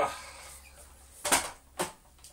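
Two short hard knocks of vacuum-cleaner parts being fitted together, a louder one about one and a half seconds in and a softer one just after, as the plastic hose handle is pushed onto the metal wand.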